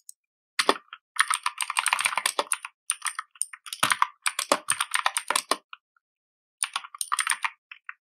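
Computer keyboard typing in quick runs of keystrokes separated by short pauses, with a pause of about a second before a last run near the end.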